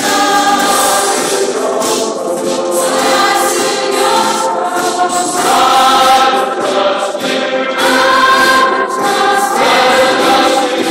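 Youth choir of mostly female voices singing a hymn together, with sustained notes that change every second or so.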